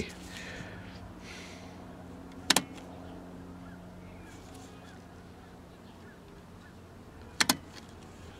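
Two sharp double clicks about five seconds apart from the switches of a Sencore CR31 CRT tester, switches that he thinks are dirty, over a steady low electrical hum.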